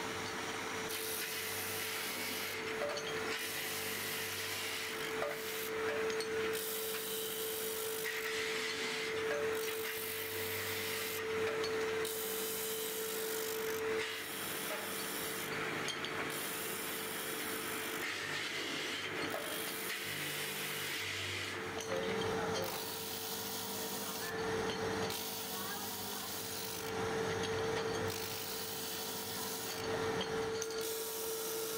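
Electric disc grinder running with a steady hum while motorcycle brake shoes are pressed against its abrasive disc, giving a rasping grind that starts and stops every second or two as each shoe is worked.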